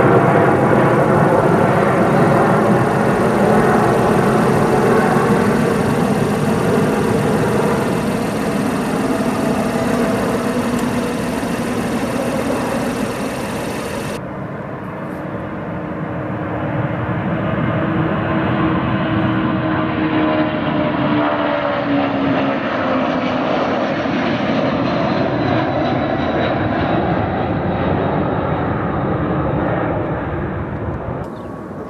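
Rolls-Royce Trent XWB engines of a Delta Airbus A350-900 at takeoff thrust as it climbs away, fading slowly. About 14 s in the recording cuts to another jet airliner departing, its engine tone rising and then falling in pitch as it passes.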